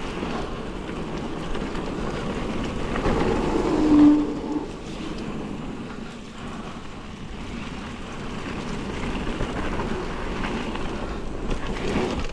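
Mountain bike rolling along a damp dirt singletrack: steady tyre rumble and rattle of the bike, with wind on the microphone. A short squeal about four seconds in is the loudest moment.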